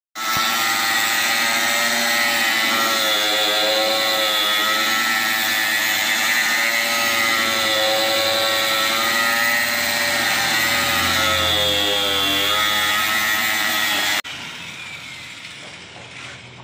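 Electric angle grinder running with a high whine, its pitch sagging twice as the disc is loaded. It is switched off about 14 seconds in: the whine stops suddenly and the disc winds down.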